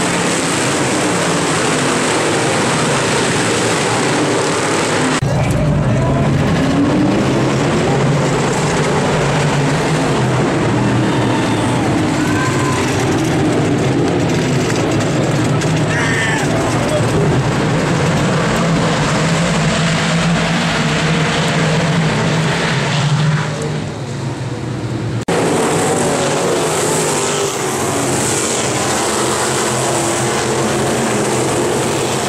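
Dirt-track race cars running at speed, a dense mass of engine noise. It cuts abruptly about five seconds in to a steady low engine hum with people's voices around it. Near the end it cuts again to winged sprint cars racing past at speed.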